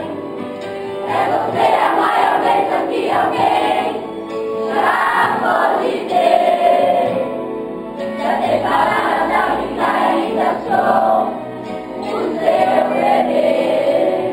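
A group of children singing a song together in unison in Portuguese. They sing in phrases a few seconds long, with short dips between them.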